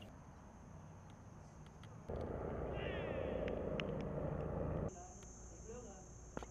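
Outdoor ambience: a steady high-pitched whine, broken from about two to five seconds by a louder stretch of rushing noise. During that stretch come a few quick chirping bird calls.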